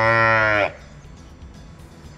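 A newborn heifer calf bawling while being tube-fed colostrum: one long moo at a steady pitch that cuts off sharply less than a second in.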